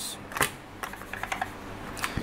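Whiteboard being wiped and a marker handled: a brief rub as a written number is erased, one sharp click, then a quick run of light clicks and taps as the marker is handled at the board's tray.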